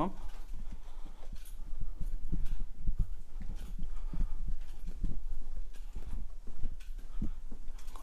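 Footsteps on a hard floor while walking, heard as irregular low thuds with a few light knocks.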